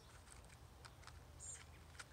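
Near silence, with a few faint ticks from a wooden match and matchbox being handled, and a brief high chirp about one and a half seconds in.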